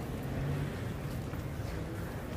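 Steady low rumble of outdoor street background noise on a pedestrian shopping street, with no distinct events standing out.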